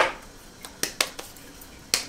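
Several light, sharp taps and clicks as a small piece of fresh pasta dough is pressed and patted flat by hand on a floured wooden board, the loudest right at the start.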